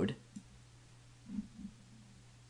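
Two soft computer mouse clicks close together, about a second and a half in, over quiet room tone.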